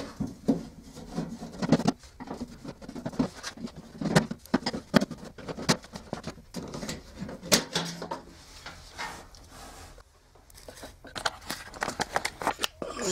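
A hand screwdriver unscrewing the screws of a washing machine's sheet-metal rear access panel, heard as irregular clicks, scrapes and light knocks, and then the panel is taken off.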